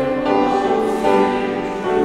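A congregation singing a hymn together, accompanied by a grand piano.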